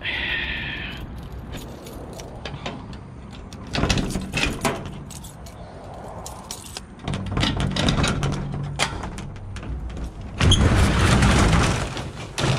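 A ring of keys jangling and clicking while a padlock on a corrugated-steel roll-up door is unlocked. Near the end the roll-up door rattles loudly as it is raised.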